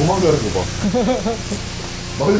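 High-pressure rinse water hissing steadily from a self-service car wash spray wand as foam is rinsed off a car.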